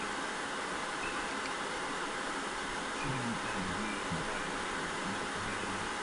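Steady low hiss of background noise, with no distinct work sound; a faint low voice murmurs briefly about halfway through.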